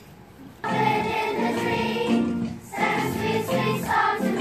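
A children's choir of primary-school pupils starts singing together about half a second in, then sings on with a brief dip in level just before the last second.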